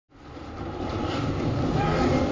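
Film soundtrack playing from a TV: a low rumbling noise that fades in from silence and grows louder over the first second and a half.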